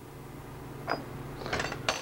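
Salt shaker shaken briefly over a small bowl of dressing: a faint click about a second in, a short light rattle about one and a half seconds in, and a sharp click near the end, over a steady low hum.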